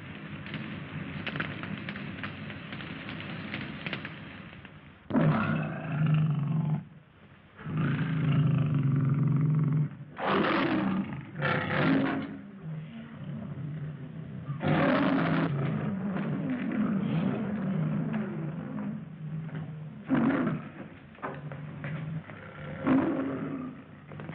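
A lion roaring again and again: a series of loud, long roars a few seconds apart, starting about five seconds in, after a quieter stretch with faint crackling.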